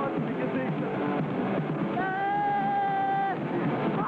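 Hardcore punk band playing live, with distorted guitar and drums. About two seconds in, a long high note is held for just over a second above the band.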